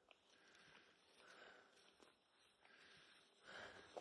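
Near silence, with a few faint, short sniffs: a Finnish Spitz nosing at tracks in the snow.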